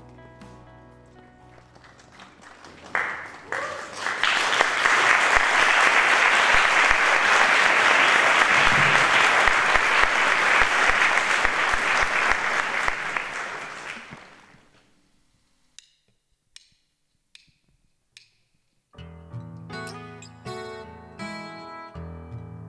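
Audience applause rises about three seconds in over a soft, sustained band chord, runs loud and even for about ten seconds, then fades away. In the quiet that follows, four evenly spaced sharp clicks count the band in, and the live rock band starts the song's intro with guitars, bass and drums.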